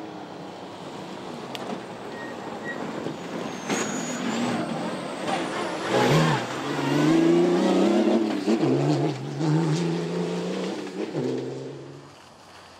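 Turbodiesel rally-raid off-road racing car driven hard on a gravel track, its engine note climbing in pitch under acceleration and dropping back at gear shifts, twice in the second half as it comes closer and gets louder.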